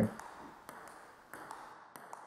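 Table tennis ball in a backhand push rally: a few faint, light clicks of the ball on bat and table, spaced roughly half a second apart.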